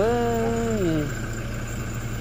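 A person's voice holding one drawn-out vowel that slides down in pitch and fades about a second in, over a steady low hum of an idling car engine.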